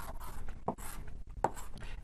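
Short taps and scrapes of writing or drawing on a board, with a couple of sharper strokes about 0.7 and 1.5 seconds in, over room tone.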